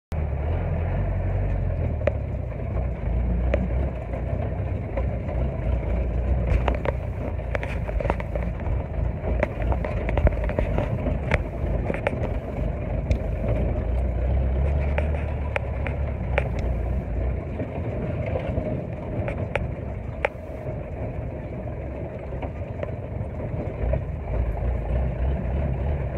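Jeep engine running as it crawls over a rough dirt track, a steady low rumble with scattered knocks and rattles from the vehicle jolting over bumps, most of them in the middle stretch.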